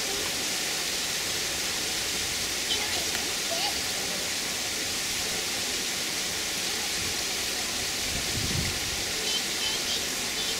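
Steady rushing, hiss-like outdoor background noise, with a few faint short chirps about three seconds in and again near the end.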